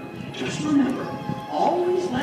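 Fireworks-show soundtrack played over outdoor park loudspeakers: music with voices over it.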